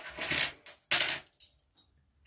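Hands handling the clipped fabric lining pieces and plastic sewing clips on a table: short rustles and light clicks, the two strongest at the start and about a second in.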